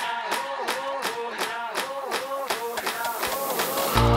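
An edited intro sound effect: a short pitched sample chopped and repeated about four times a second, the repeats speeding up toward the end like a stutter build-up.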